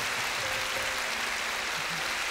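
A large congregation applauding with steady clapping.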